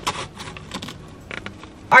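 Handling noises as a strap-on vanity mirror is fitted onto a car's sun visor: a scatter of short clicks and rustles of plastic and straps.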